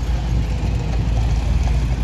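City street traffic: a motor vehicle's engine running close by, heard as a steady low rumble.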